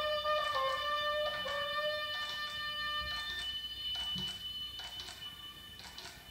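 Free-improvised duet of alto saxophone and plucked strings. A held note with a slight pitch bend dies away about halfway through, while scattered plucked notes go on and grow quieter toward the end.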